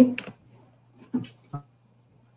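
Speech only: a voice trails off at the end of a word, then two brief clipped voice fragments over a faint steady hum, the choppy sound of a video-call connection freezing.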